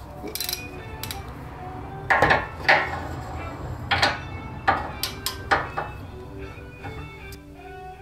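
A socket wrench on a long extension clinks and knocks against metal as it loosens 12 mm bolts on a car's front crash bar. The clinks are sharp and irregular, about eight of them in the first five or six seconds, over background music.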